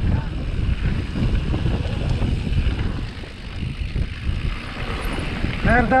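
Wind rushing over the microphone of a helmet-mounted camera on a mountain bike riding down a rocky dirt trail, with the crunch and rattle of the tyres and bike over the rough ground throughout.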